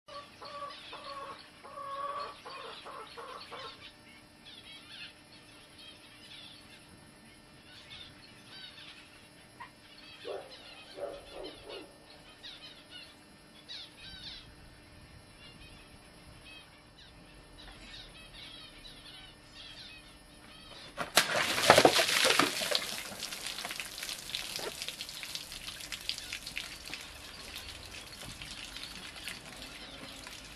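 Birds calling in a garden, with repeated clucking calls like chickens in the first few seconds and scattered chirps after. About two-thirds of the way through, a loud crackling hiss starts suddenly and carries on to the end.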